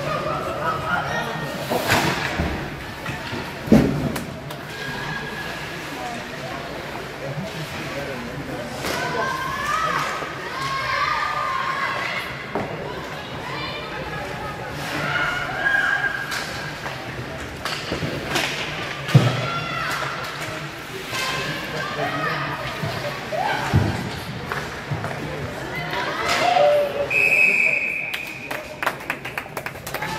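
Ice hockey rink sounds: several loud thuds of puck and players against the boards, with spectators' voices in a large hall. Near the end a referee's whistle stops play, followed by a patter of clapping.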